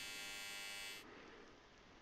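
AC TIG welding arc on aluminum, from a Dynasty 280 set at 140 amps, buzzing steadily, then cutting off suddenly about a second in.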